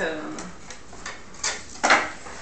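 A few light clicks, then two sharper knocks near the end, the second the louder: a hard object being handled on a wooden table.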